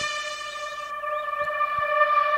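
A sustained electronic note with overtones, held steady in pitch and slowly fading: the tail of a music sting played for a six.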